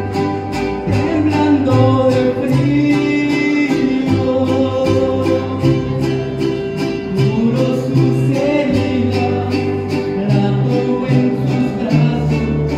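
A small group of acoustic guitars, with a bass guitar carrying the low line, strummed in a steady even rhythm, with voices singing along.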